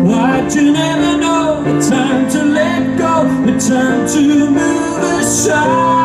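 Live pop ballad: a man singing a melody into a microphone over upright piano accompaniment, with long held and sliding vocal notes.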